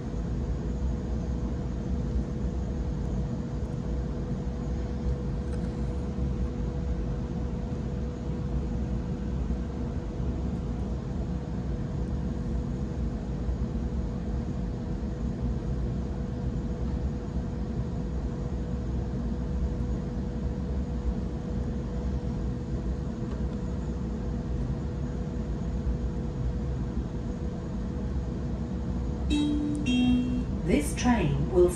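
Cabin noise of a Waratah double-deck electric train under way: a steady rumble of the wheels on the track with a thin, steady hum over it. Near the end a few short tones come in.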